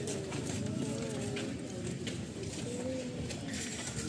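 Indistinct background chatter of several voices, none of the words clear.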